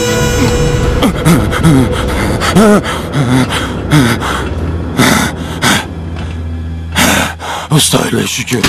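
A man groaning and gasping for breath in distress, with short pained moans and sharp breaths throughout. Music fades out in the first second.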